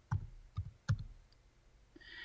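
A few separate computer keyboard keystrokes, unevenly spaced, as a name is typed into a text field.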